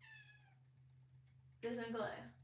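A door opening with a brief high squeak from its hinge that slides down in pitch and lasts about half a second.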